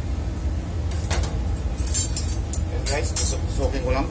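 Steady low machine hum. From about a second in come several short, sharp clicks and rustling handling sounds, and a voice is heard briefly near the end.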